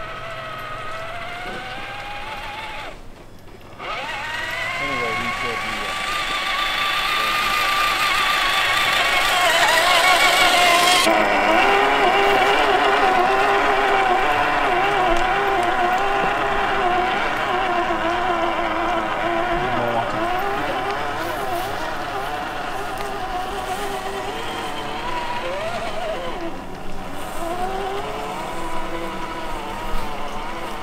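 Traxxas TRX-4 Defender RC crawler's electric motor and gearbox whining as it drives. The pitch rises and falls with the throttle, cutting out briefly about three seconds in.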